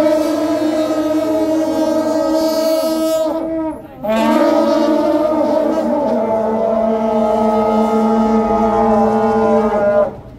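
A troupe of shaojiao, long brass Taiwanese processional horns, sounding several horns together in long held blasts: one of about three and a half seconds, a short break, then a second blast from about four seconds in that holds on through the rest.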